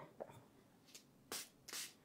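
Two short, faint hisses about a second and a half in: a fine-mist spray bottle of water being pumped to moisten the whipped cream before a final smoothing pass.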